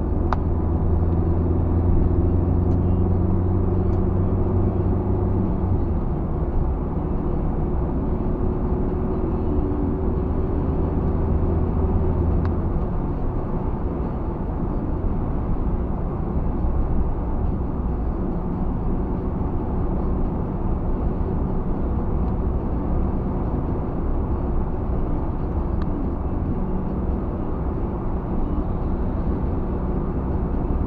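Car engine and road noise heard from inside the cabin. A low engine drone is strong for the first twelve seconds or so while the car pulls past a lorry, then eases to a steady rumble of tyres and engine at cruising speed.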